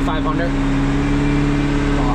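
Farm tractor engine running at a steady speed, a constant hum heard from inside the cab.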